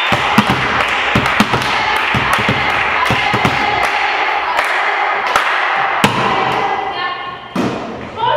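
Volleyballs bouncing on a wooden gym floor, a run of quick thuds in the first few seconds and a harder one about six seconds in, over the echoing chatter of girls' voices in a sports hall. A voice calls out near the end.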